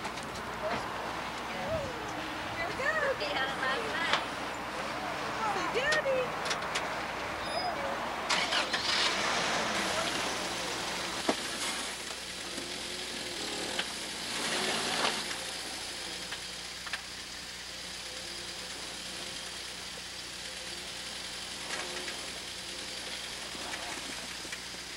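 Voices chatting, then a pickup truck's engine running in deep snow, with two louder surges of noise before settling into a steady run.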